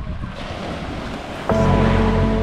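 Wind and surf noise on a beach. About one and a half seconds in, background music cuts in abruptly with steady held notes and becomes the loudest sound.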